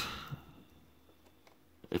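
Near silence with a few faint, short clicks from hands handling a hard plastic toy vehicle.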